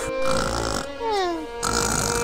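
Cartoon snoring: a rough, raspy snore followed by a falling whistle, repeating about every second and a half.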